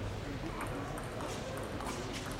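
Table tennis ball in a rally, clicking off the rackets and the table in a few sharp taps in the second second, over a steady low hall hum.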